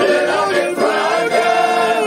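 A group of older men singing a folk song together in chorus on held notes, accompanied by two piano accordions.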